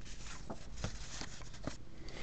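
Quiet room with a few faint soft ticks from hands handling a trading card and a sheet of paper.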